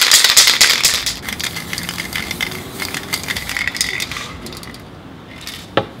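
Aerosol spray paint can shaken hard, its mixing ball rattling rapidly: loudest in the first second, then softer and fading out about four and a half seconds in. A single sharp click comes just before the end.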